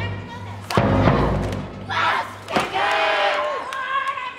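Large marching bass drum struck once just under a second in, a deep boom that rings on. Later a loud drawn-out shout is held for about a second before falling away, over steady music.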